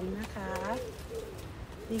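A pigeon cooing softly in the background, heard under a woman's brief speech.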